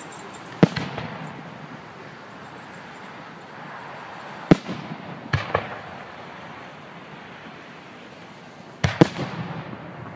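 Aerial fireworks bursting overhead in sharp bangs, each with an echo trailing after it. There is one bang just under a second in and another about four and a half seconds in, then a quick pair just after five seconds and another pair near the end.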